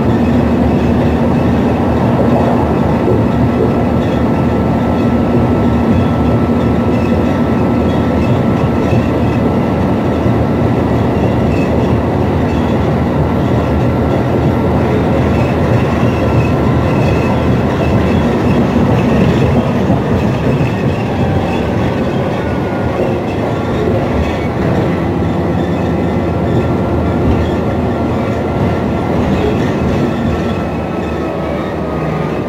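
Cabin noise inside a New Flyer XN60 articulated bus under way: the Cummins Westport ISL G natural-gas engine running with road and rattle noise, steady and loud. A faint high whine drops slightly in pitch in the last third.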